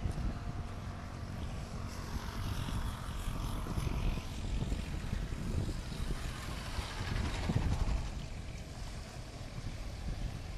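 A motorcycle riding through shallow floodwater over a road, its engine running and its tyres splashing, growing loudest near the end as it draws close. Wind buffets the microphone throughout.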